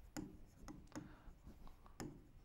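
Faint taps and short scratches of a pen writing on an interactive whiteboard screen, about half a dozen brief strokes.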